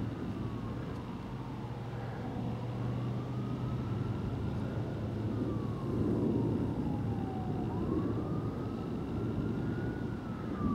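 A siren wailing, its pitch slowly rising and falling about every five seconds, over a low rumble that swells about six seconds in.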